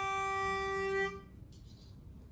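A pitch pipe blown for one steady reedy note lasting about a second and a half, giving an a cappella group its starting pitch before they sing.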